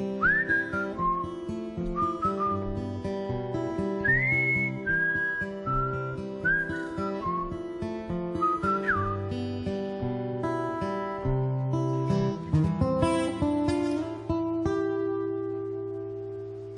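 Solo acoustic guitar playing the instrumental close of a slow ballad, with a melody whistled over it for about the first nine seconds, the whistle sliding between notes. The guitar then carries on alone and settles on a long held final chord near the end.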